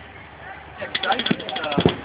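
A paintball marker firing a rapid string of about a dozen shots in about a second, starting about a second in, with people talking over it.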